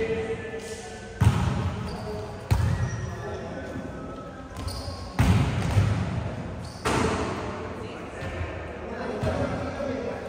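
Volleyball being hit during a rally: four sharp smacks spread over about six seconds, each ringing on in the echo of a large gym. Players' voices call out between the hits.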